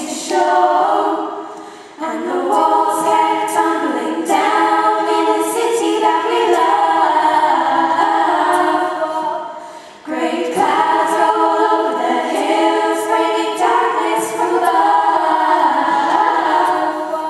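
A group of teenage girls singing unaccompanied in harmony, in long held phrases. The singing fades out at the end of a phrase about two seconds in and again about ten seconds in, each time coming straight back in with the next phrase.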